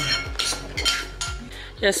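Metal spoon clinking against a dish during eating, over background music with a steady beat of low thumps about twice a second.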